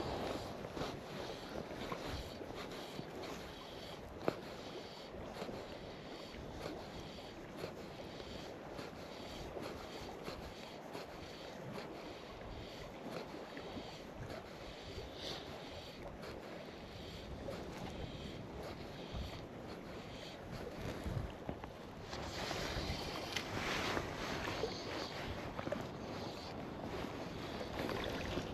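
Small wind-driven waves lapping and sloshing close by, with many small splashes and wind on the microphone; it grows louder about twenty-two seconds in.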